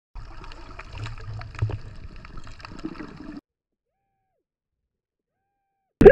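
Muffled underwater sound picked up by a submerged camera: a low rumble and hiss with scattered faint clicks and bubbling. It cuts off suddenly about three and a half seconds in, leaving near silence.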